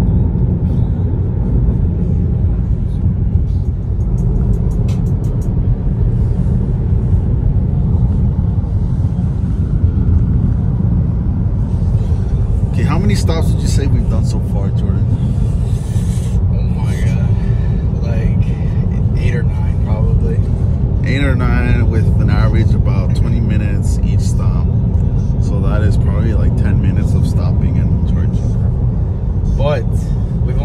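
Steady low road and tyre rumble inside the cabin of a Tesla Model 3 electric car cruising at highway speed, with no engine note under it. Voices come in from about halfway through.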